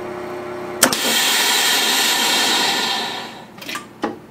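VacMaster 215 chamber vacuum sealer ending its cycle. The pump hums steadily, then a click about a second in, and a loud hiss of air rushing back into the chamber for about two seconds before it fades; the returning air pressure presses the lids down and seals the jars. Another click comes near the end as the lid lifts.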